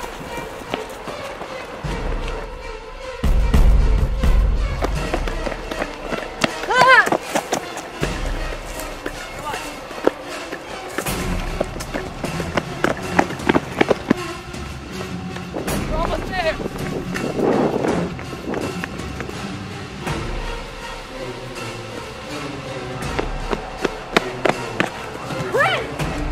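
People running, with quick footfalls, over a music score. A few high yells rise and fall at intervals, and a deep rumble swells about three seconds in.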